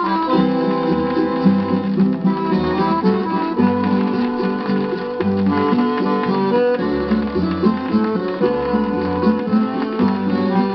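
Guarânia music played from a 78 rpm record on a turntable: an instrumental passage of plucked acoustic guitars over a bass line, with long held accordion notes. The sound has no treble above the upper midrange, as on an old disc transfer.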